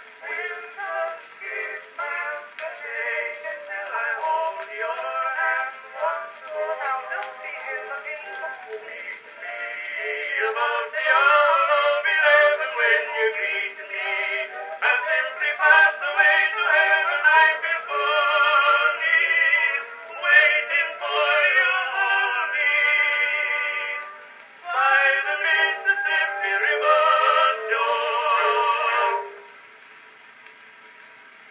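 Edison cylinder phonograph playing a Blue Amberol cylinder through its horn: an acoustic-era recording of singing with accompaniment, thin and without bass. The song ends about 29 seconds in, leaving the cylinder's surface hiss.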